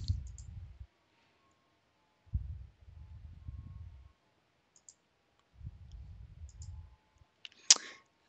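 A few faint computer mouse clicks, spread over the second half, with stretches of low rumbling noise between them.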